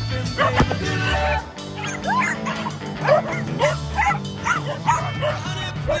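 Several dogs barking repeatedly in play, many short barks overlapping one another, over background pop music with a steady bass line.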